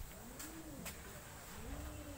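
Faint bird cooing: a low call that swells up and falls away, heard twice, once about half a second in and again near the end.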